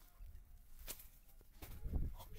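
A few faint clicks, then a soft low thump near the end.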